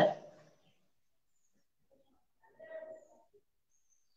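Near silence in a pause between spoken phrases. One short, faint pitched sound comes a little past halfway through.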